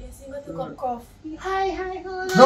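A person's high voice singing or chanting softly, moving between pitches, then holding one steadier note that is louder in the second half.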